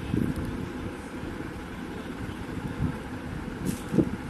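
Steady low background rumble with soft, irregular knocks from hands working at the beadwork. Near the end there is a brief light rattle as fingers dig into a plastic bowl of loose beads, then a sharp thump.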